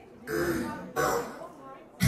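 A person's voice: two short vocal sounds, the second under a second after the first.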